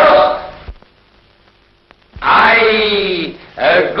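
A voice making drawn-out, wordless vocal sounds: a short one at the start, then after a quiet gap of about a second and a half a longer one whose pitch falls, and another beginning near the end.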